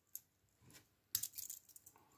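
Steel watch bracelet and folding clasp clicking faintly as the clasp is flipped open: a single click near the start, then a quick cluster of small metallic clicks a little past one second.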